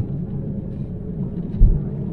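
Low road and tyre rumble inside the cabin of a Tesla Model 3 driving over a snow-covered road at about 50 km/h, with no engine note, and a brief low thump about one and a half seconds in.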